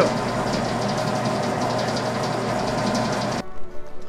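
Electric stand mixer motor running steadily as its beater kneads a bowl of tamale masa wet with chicken broth, then stopping abruptly near the end.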